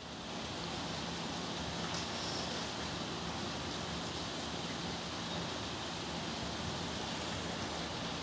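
Steady background hiss with no speech, with a faint low hum through the first part.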